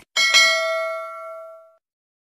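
Notification-bell sound effect of a subscribe animation: a short mouse click, then a bright bell ding struck twice in quick succession that rings and fades away over about a second and a half.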